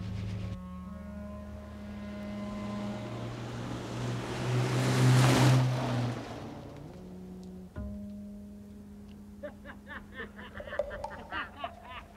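Film soundtrack music of long held notes, with a loud whoosh that swells and fades about four to six seconds in. In the last few seconds a quick string of short, sharp pitched sounds comes in over the music.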